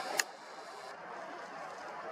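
Steady faint outdoor hiss with one sharp click just after the start, from the camera being handled as its framing is adjusted.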